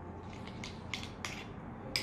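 Spoon stirring an oil-and-herb dressing in a small ceramic ramekin, clicking faintly against the bowl about four times.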